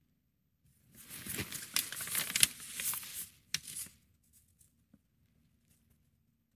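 Close rustling and crinkling of a nylon parka as the wearer shifts, lasting about two and a half seconds, with a second shorter rustle just after.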